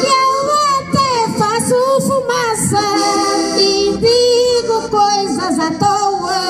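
A woman singing a verse of Portuguese cantares ao desafio in a high voice through a PA, with button accordions accompanying her.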